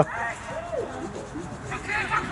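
Distant men's shouts and calls across a football pitch during play, several voices overlapping, with a clearer shout near the end.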